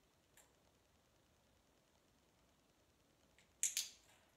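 Dog-training clicker clicked, a sharp double click-clack just before the end, with a faint click about half a second in: the handler is marking the dog's correct move toward the suitcase during shaping.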